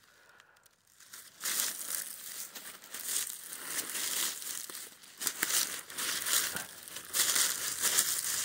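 Footsteps through dry fallen leaves: an irregular rustling and crunching that starts about a second in and keeps on in uneven steps.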